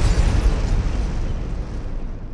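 Cinematic boom sound effect from a title sting: a deep impact whose low rumble and hiss fade slowly away.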